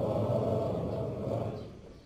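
A low, pitchless murmur of many voices from a standing prayer congregation in the pause between two of the imam's takbirs. It fades away toward the end.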